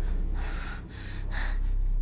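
A woman breathing hard in distress: a few quick, noisy breaths in and out.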